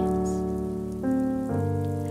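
An orchestra holds sustained chords between sung phrases, the chord changing about a second in and again about half a second later, over a light patter of falling rain.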